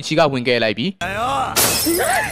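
A voice speaking, then about a second and a half in a sudden loud crash with a shattering, breaking sound, heard together with a shout.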